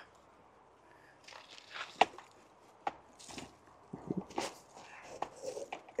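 Faint rustling of soil with a few sharp light clicks and knocks as a young citrus tree's root ball is worked out of its nursery pot and loosened by hand.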